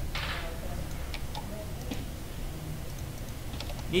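A few soft, scattered clicks of a computer mouse and keyboard over a steady low background hum.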